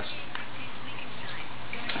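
Steady background hiss with a faint low hum: room tone, with no distinct sound events.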